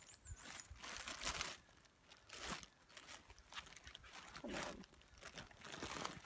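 Rustling and crinkling of a bag and folded paper as a printed trail map is dug out, in irregular bursts.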